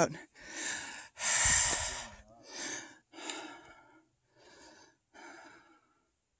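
A person breathing hard and out of breath from climbing a steep trail: about six heavy breaths, the second the loudest, then growing fainter.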